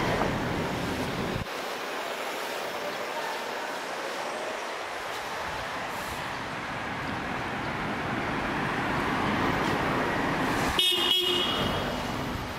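Steady city street traffic noise, with a short horn toot near the end.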